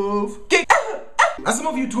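A man sings a held note that mimics a downtown bus's musical horn, and the note breaks off shortly in. A few short, sharp vocal yelps follow, about a second apart.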